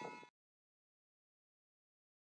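Near silence: a faint tail of the preceding background sound fades out just after the start, then dead digital silence.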